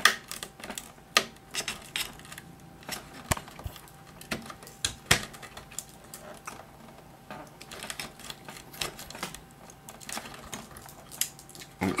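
Irregular clicks and small plastic knocks of fingers working at a wire connector on an LCD TV's power board, trying to work a stuck plug loose.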